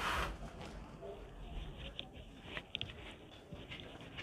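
Cloth being gathered and lifted by hand: soft rustling of fabric, with a brief louder swish right at the start and a few faint ticks.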